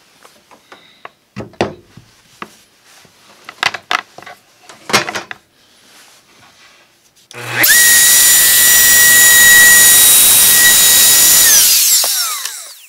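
Bosch plunge router with a half-inch flush trim bit: a few knocks and rustles as it is handled, then about seven seconds in it is switched on, its whine rising quickly to speed and holding steady. Near the end it is switched off and the whine falls as it winds down.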